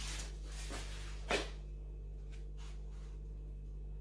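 Steady low electrical hum under faint rustles of a foam cake dummy with a fondant book topper being lifted and turned in the hands, with one short knock just over a second in.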